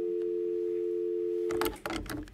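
Telephone dial tone: a steady two-note tone that stops about one and a half seconds in, followed by a few clicks.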